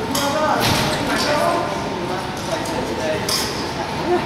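Indistinct voices echoing in a large hall, with footsteps on the matted floor.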